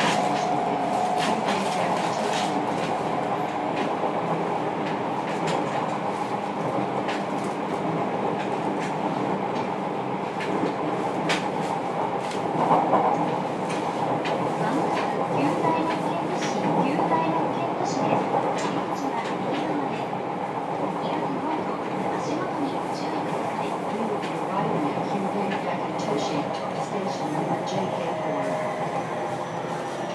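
Running sound inside a JR Kyushu 303 series electric train's motor car (Hitachi IGBT VVVF drive) under way: a continuous rumble with steady motor tones and wheels clicking irregularly over the rails. It swells briefly about halfway through.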